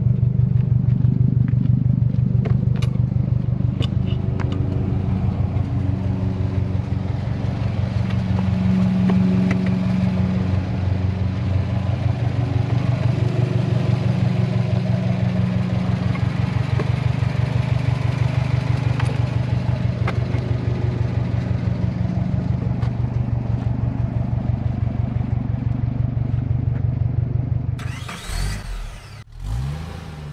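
2020 Subaru WRX STI's turbocharged 2.5-litre flat-four idling steadily, heard at its quad-tip exhaust. Near the end it gives way to a brief sound effect that sweeps in pitch.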